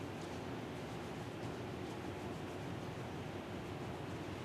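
Steady room tone: an even hiss with a faint low hum, and a few light rustles and ticks.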